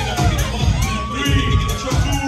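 Hip-hop music with a heavy, pulsing bass beat, and the crowd cheering and shouting over it.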